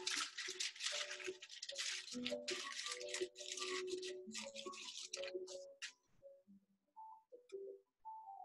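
Paper crinkling and rustling as a sheet of paper is handled and crumpled in the hands, dying away about six seconds in. Faint short musical notes sound underneath.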